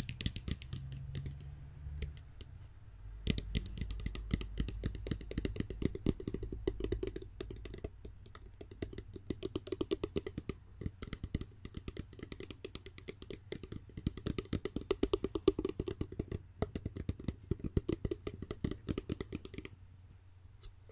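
Fingernails tapping rapidly on a spray bottle held close to the microphone. A fast, uneven run of light clicks starts about three seconds in, after a few seconds of softer handling noise.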